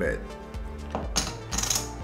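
Online poker client sound effects: short clicks near the middle, then a noisy rattle lasting just under a second as the call's chips are gathered into the pot and the flop is dealt, over quiet background music.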